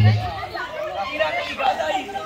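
A group of people chattering and calling out at once. Bass-heavy music stops just after the start, leaving the voices.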